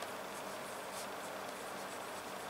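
Pen scratching faintly on paper in short strokes as a word is handwritten, over a steady low hum.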